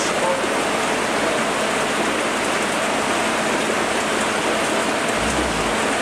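Steady rushing and bubbling of aerated aquarium water in the fish tanks, with a brief low rumble about five seconds in.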